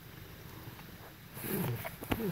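Domestic cat close to the microphone giving a short, low meow that falls in pitch about one and a half seconds in.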